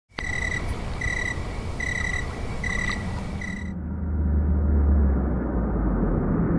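Sound-effect intro of a night ambience: a chirp, like a cricket's, repeated five times about once every 0.8 s over a steady hiss. Nearly four seconds in, the hiss stops and a deep rumble swells up.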